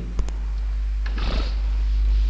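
A steady low hum, with a sharp click just after the start and a short breathy noise about a second and a quarter in.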